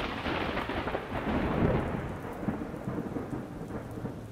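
A thunderclap over heavy rain. It is loudest at the start, then rumbles off over the next couple of seconds while the rain hisses on.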